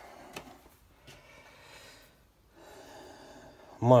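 Mostly quiet room tone with faint handling noise: one small sharp click about a third of a second in, then a soft breathy rustle near the end just before speech resumes.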